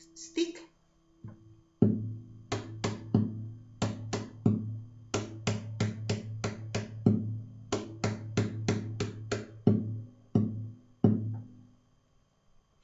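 Guitar playing a dance tune in A minor: plucked melody notes, about two to three a second, over a held low bass note, starting about two seconds in.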